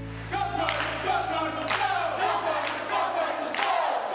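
A crowd of voices shouting together in unison, about one shout a second, each starting sharply and falling in pitch, over a low held tone that fades out near the end.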